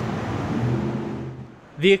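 A 2015 Audi RS 7's twin-turbo 4.0-litre V8 idling steadily just after start-up. The sound fades out about a second and a half in.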